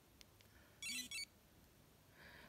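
Polar Grit X sports watch sounding its start-of-recording alert: two short electronic chirps about a second in, with a brief low buzz under them, confirming that training recording has started.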